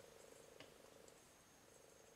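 Near silence: room tone with a faint steady hum and one faint tick about half a second in.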